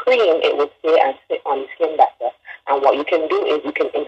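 Speech only: a person talking steadily with short pauses, as on a radio broadcast.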